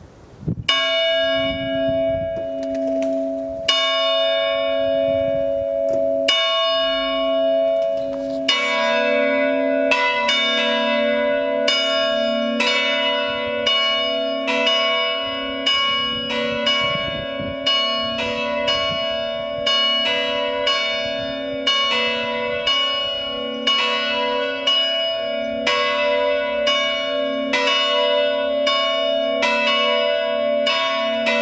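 Two bronze church bells cast by Eugène Baudouin in 1888 ring the call to mass: bell 2 (Si3) is swung in retrograde swing and bell 3 (Do#4) is tolled. For the first eight seconds one bell strikes alone every few seconds. Then a second bell joins, and the strikes come quicker and overlap, each one ringing on.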